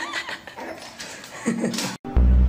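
French bulldog puppy whining, with a short cry at the start and a louder one near the end.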